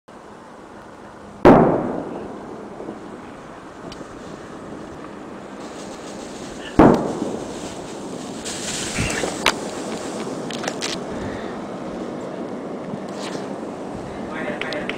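Two loud, sharp bangs about five seconds apart, each dying away over a second or so, over a steady hiss with a few faint clicks near the end.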